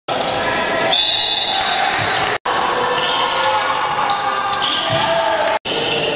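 Basketball game sound in a large, echoing gym: a ball bouncing on the hardwood and high, short squeaks of sneakers on the court, with a voice over it. The sound cuts out for an instant twice, about two and a half seconds in and near the end, where highlight clips are spliced together.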